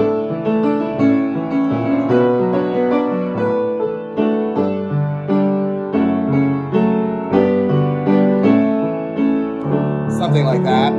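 Piano accompaniment for a vocal warm-up: chords and melody notes played at a steady pace, with a new note struck roughly every half second.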